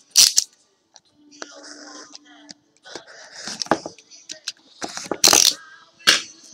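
Trading-card packaging being handled and opened by hand: scattered small clicks and rattles of plastic and card, with two short sharp rustling bursts, one just after the start and one about five seconds in.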